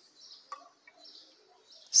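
Near-quiet pause: a single light click of a plastic measuring cup being handled about half a second in, over faint high chirping in the background.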